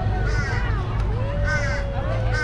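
A bird calling with a harsh caw, repeated about once a second, over a steady low rumble.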